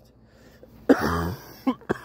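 A man coughs into his shirt: one harsh cough about a second in, then two short catches near the end.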